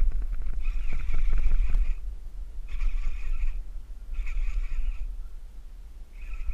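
Fishing reel cranked in three short bursts, a whirring buzz each time, as a hooked bass keeps the rod bent. A steady low rumble on the microphone runs underneath.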